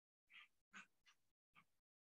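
Near silence, broken by four faint, brief sounds in quick succession, the first about a third of a second in.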